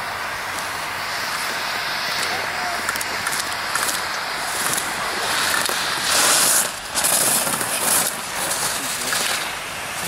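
Ski edges scraping and hissing on hard-packed snow as a slalom skier carves turns, in repeated surges that are loudest from about six to eight seconds in as the skier passes close by.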